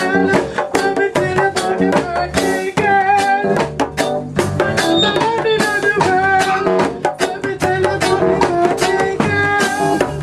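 Live band music: a hand drum struck in a quick, steady rhythm and an upright bass plucked, with a sustained melody line over them.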